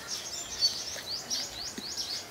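Small birds chirping: a run of short, high chirps, each falling in pitch, several a second.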